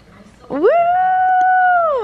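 A woman's long, high "woo!" cheer that swoops up about half a second in, holds one steady pitch and falls away near the end.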